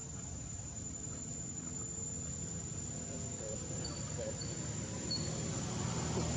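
Insects droning with one steady, high-pitched tone, over a low background rumble. Three brief high chirps come between about four and five seconds in.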